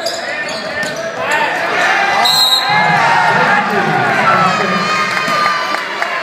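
Basketball game sounds in a gym: sneakers squeaking on the hardwood, the ball bouncing and crowd voices. A short, high referee's whistle sounds about two and a half seconds in, and the crowd noise swells after it.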